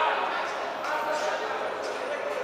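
Voices calling out in a large, echoing sports hall during an amateur boxing bout, with a few dull thuds from the ring.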